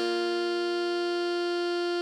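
Alto saxophone holding one long note, a written D5 on the fingering chart, over a sustained Bb major chord on keyboard.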